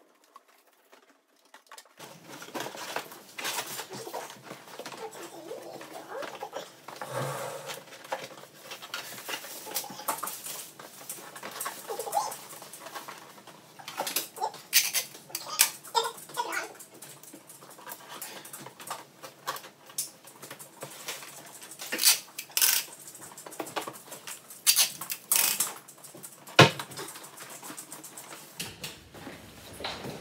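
Cardboard box being cut and handled at a table: rustling and scraping with many sharp clicks and taps, starting about two seconds in.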